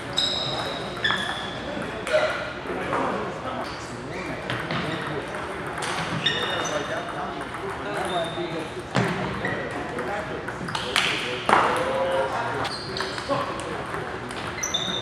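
Table tennis balls clicking sharply off paddles and tables in irregular rallies, some hits with a short high ring, from several tables at once.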